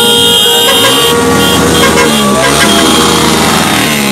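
Several vehicle horns honking together in street traffic, held tones overlapping, with voices heard over them.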